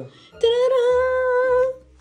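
One held vocal note, a little over a second long: a voice sings a single steady pitch that wavers slightly at first.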